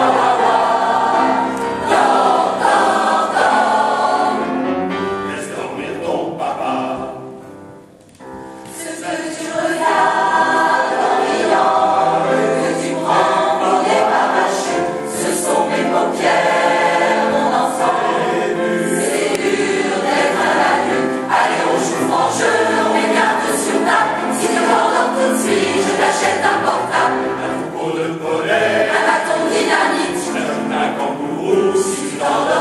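A choir singing a lullaby in sustained phrases, with a short pause about eight seconds in before the singing picks up again.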